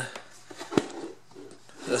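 A single sharp plastic click a little under a second in, with faint soft handling noises around it, from handling the shop vacuum's removed plastic lid.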